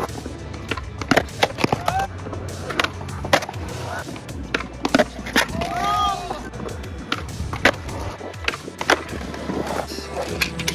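Skateboards on a concrete skatepark: wheels rolling, with a dozen or so sharp clacks of boards hitting the concrete, over steady background music.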